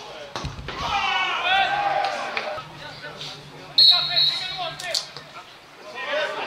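A dull thump, then men's voices shouting on the pitch, and nearly four seconds in a short, loud blast of a referee's whistle.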